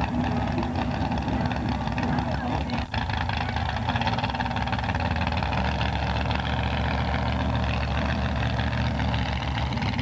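Pickup truck engine idling steadily.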